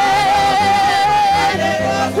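Live church worship music. A singer holds one long wavering note over the band and drops to a lower note about a second and a half in.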